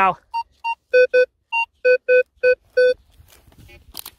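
Metal detector sounding its target tone over a buried metal object: about nine short beeps in two pitches, three higher and six lower, coming in quick succession in the first three seconds.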